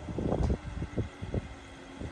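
A telehandler's engine running with a steady hum, under irregular low thumps of wind buffeting the microphone.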